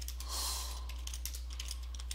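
Computer keyboard typing: a quick run of key clicks as numbers are entered, with a short breath of noise on the headset microphone about half a second in, over a steady low hum.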